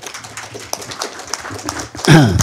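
Audience applauding: many hands clapping together in a dense, irregular patter.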